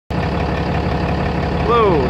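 The 6.7-litre Cummins inline-six diesel of a 2016 Ram 3500 idling steadily, heard up close at the front grille. A man's voice starts near the end.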